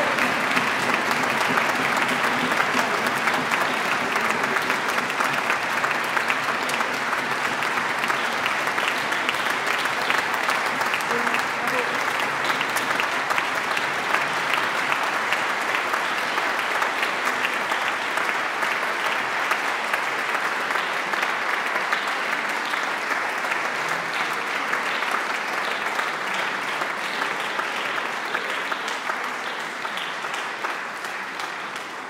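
Audience applauding, a dense steady clapping that slowly tapers off toward the end.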